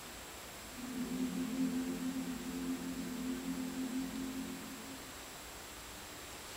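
Women's a cappella choir holding a soft, low final chord that comes in about a second in and fades away around five seconds in, at the close of the song.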